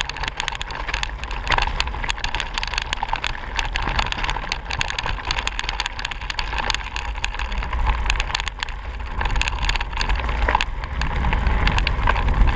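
Riding noise of a mountain bike on a stony gravel track, picked up by a camera on the bike: a continuous, irregular rattle and clatter over the stones, with a constant low rumble.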